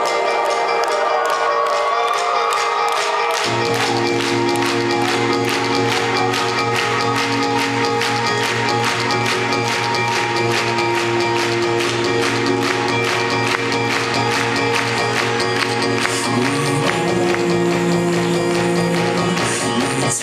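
Live band playing an instrumental passage of electronic-leaning indie rock: a fast, steady beat with sustained keyboard and guitar tones, and low bass notes that come in about three and a half seconds in.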